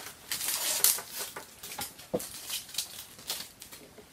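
Crinkling and rustling of clear plastic wrap and a cardboard collectible-figure box being handled and unwrapped, in irregular crackles, with a light knock about two seconds in.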